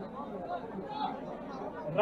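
Low background chatter: faint, indistinct voices of people standing around.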